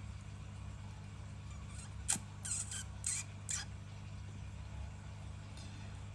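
A few short scratchy rasps on a lottery scratch card, about two to three and a half seconds in, over a steady low hum.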